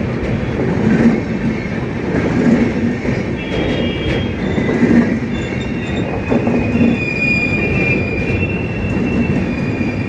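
Passenger train coaches rolling past close by: a loud, steady rumble of wheels on rails with a heavier clatter every second or two as wheel sets cross the rail joints. From about three seconds in, thin high-pitched wheel squeal rises over the rumble for several seconds.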